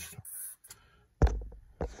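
Handling noise from objects being moved on a foam board: a brief rustle, then a sudden dull low thump a little over a second in, and a short click near the end.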